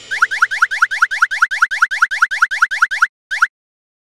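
Cartoon sound effect for balls dropping into holes: a fast, even run of short blips that slide in pitch, about seven a second, stopping about three seconds in, then one more blip shortly after.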